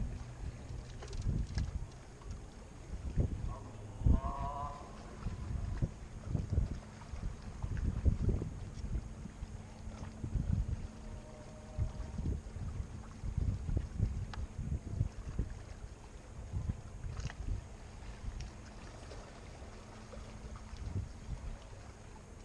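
Wind gusting on the microphone in uneven low rumbles.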